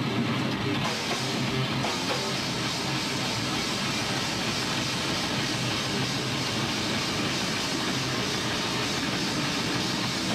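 Grindcore band playing live at full tilt: distorted electric guitar and bass over fast drumming, a dense, unbroken wall of sound.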